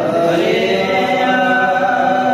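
Several men chanting Gurbani verses together in unison, holding long drawn-out notes.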